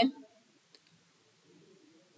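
The tail of a spoken word, then near silence broken by one faint click.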